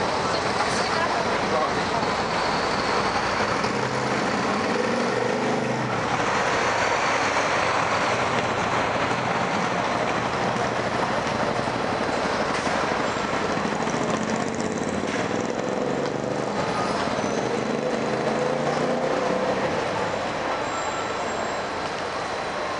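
Busy city street: a steady wash of road traffic noise with indistinct voices mixed in.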